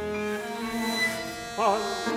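Contemporary chamber ensemble music: several long held pitches sound together, and a brief, louder note with wide vibrato enters about one and a half seconds in.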